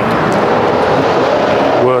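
Steady vehicle noise, an even rushing sound with no distinct strokes or pitch, with faint voices under it.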